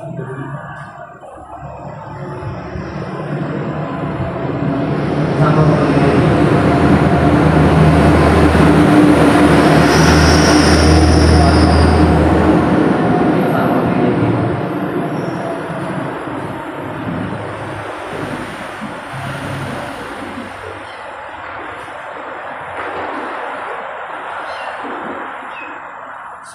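A heavy vehicle passing close by: a rumble that builds over several seconds, peaks in the middle with a brief high squeal, and slowly fades away.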